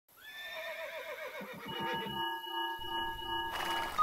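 A horse whinnying: one long call that falls in pitch with a shaking tremor. It gives way to a steady pulsing tone, about two pulses a second, joined by a low rumble and a rising hiss near the end.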